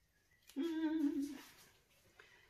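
A woman's voice humming a short, level 'mmm' on one steady note for just under a second.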